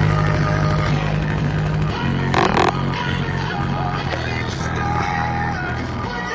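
A pop song with singing and heavy bass notes playing through a Grasep DQ-15 small portable speaker, its passive radiator pumping with the bass. A short noisy burst sounds about halfway through.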